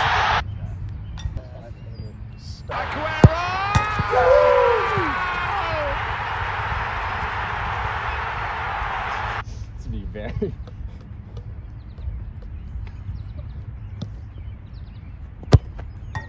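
A football struck hard, a sharp thud just over three seconds in and another near the end. Between the two, voices shout and cheer over a hiss that cuts off suddenly about nine seconds in.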